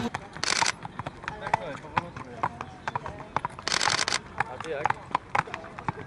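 A racehorse's hooves clopping in irregular sharp clicks on a paved path as it is led at a walk, with two short breathy hisses about half a second and four seconds in, over faint background voices.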